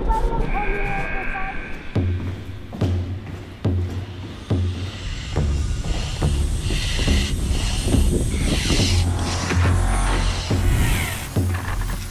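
Background music with a pulsing low beat about once a second, building under a changing higher layer.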